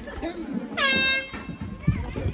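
A single short air-horn blast, one steady pitched tone lasting about half a second near the middle, over players' and spectators' voices.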